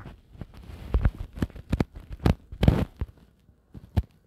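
A string of irregular soft taps and knocks as a phone is handled and its touchscreen tapped, picked up close by the phone's own microphone.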